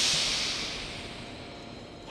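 Loud hiss of compressed air released from a train's pneumatic system, fading away over about a second and a half.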